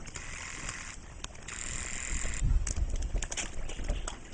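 Light splashing and dabbling of black swans' bills in shallow pond water as koi crowd up to them, heard as scattered small clicks and splashes. Under it is a steady outdoor hiss and a low rumble on the microphone that grows louder in the second half.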